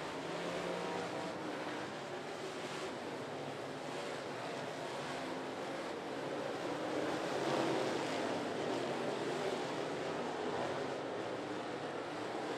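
Limited late model dirt-track race cars' V8 engines running at speed as the field laps the oval, heard as a steady wash of engine noise that swells a little about two-thirds of the way through.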